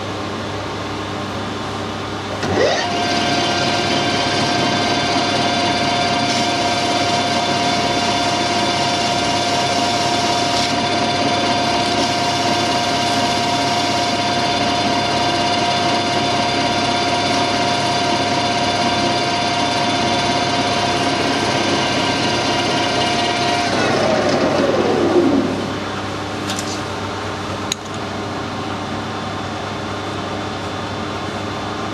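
Metal lathe with a four-jaw chuck starting up about two seconds in and running at a steady speed with a constant whine. About 24 seconds in it is switched off and the whine falls away as the chuck spins down.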